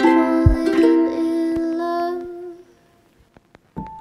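Background music: a plucked-string instrumental tune that fades out about two and a half seconds in. After a short near-silent gap with a few faint clicks, piano-like keyboard notes begin near the end.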